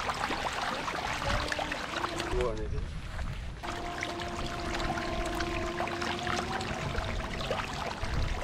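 A dense crowd of tilapia thrashing at the pond surface, a constant churn of many small splashes as they jostle, typical of a feeding frenzy. A steady pitched tone holds in the background through the second half.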